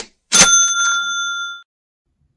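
A short click, then a bright bell ding with several ringing tones that holds for just over a second and stops: an edited-in sound effect marking the card's value as it pops up on screen.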